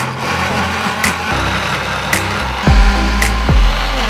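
Tefal personal blender motor running, blending garlic, onion and oil into a smooth paste. Background music with a beat about once a second plays alongside.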